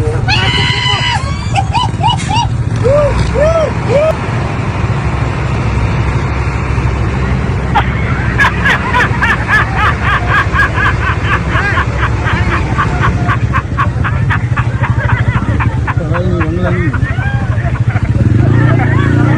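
Road traffic with a truck engine running steadily underneath, and voices and shouts over it. From about eight seconds in, a fast run of short sharp sounds, about four a second, lasts for several seconds.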